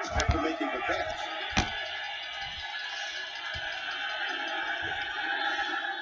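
Stadium crowd noise with music from a football broadcast, heard through a TV speaker as a steady mixed din, with a couple of low thumps in the first two seconds.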